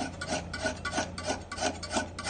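A two-handled steel scraper drawn by hand along a forged knife blade clamped in a wooden jig, shaving off metal in quick rasping strokes, about three a second. It is shaving away the blade's soft iron cladding to bare the steel core.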